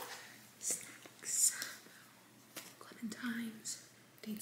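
A woman whispering a few words, with soft hissing sounds and a short low murmur about three seconds in.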